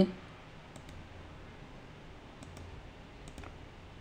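A few light computer-mouse clicks, two of them in quick pairs, as the program is launched from the IDE's Run button, over a low steady room hum.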